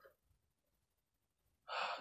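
Near silence, then near the end a man's short breath, drawn just before he starts speaking again.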